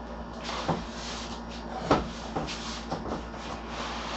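Cardboard box of a PC case being handled and opened: a few knocks, the loudest about two seconds in, with scraping and rustling of cardboard between them.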